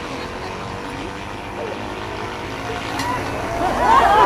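A motor engine running steadily in the background, with a single sharp click about three seconds in.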